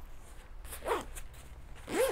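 A backpack's lockable zipper being worked by hand: a few short, faint zip pulls.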